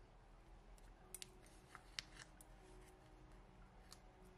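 Faint, scattered clicks and light taps from tweezers setting a small sticker down on a journal page, with a few sharp clicks about a second in and the sharpest at about two seconds.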